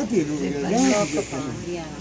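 A woman's voice making short wordless, breathy sounds with a hiss, two pitch-bending utterances in the first second or so.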